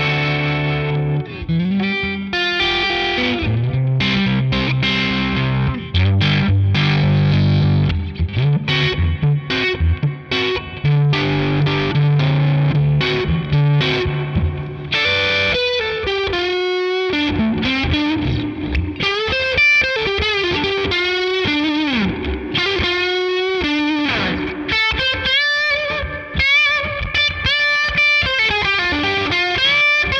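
Electric guitar played through a Hamstead Artist 60 tube amp set to 7 watts, pushed into overdrive by the Hamstead Ascent clean boost at its full 20 dB rather than by an overdrive pedal. Distorted chord riffs give way about halfway through to a single-note lead line full of string bends and vibrato.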